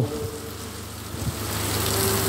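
Heavy rain hissing steadily, growing louder about a second and a half in, over a low steady hum.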